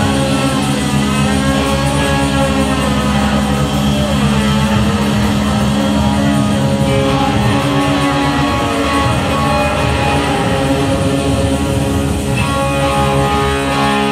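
Live rock band playing, with electric guitar prominent over a full, steady band sound.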